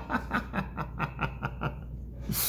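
A man laughing to himself in a run of quick snickers, about five a second, trailing off near the end.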